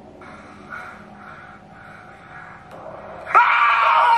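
A person's loud, high-pitched scream breaks out suddenly near the end, after a few seconds of faint, muffled sound.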